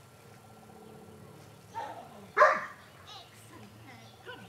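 Flat-coated retriever barking once, loudly and briefly, about two and a half seconds in, with a softer sound just before it.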